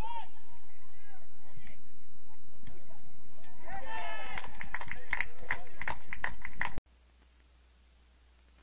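Players and onlookers on a soccer field shouting, swelling into a quick run of loud excited yells and cheers a few seconds in. The sound then cuts off abruptly to a faint steady hiss of field ambience near the end.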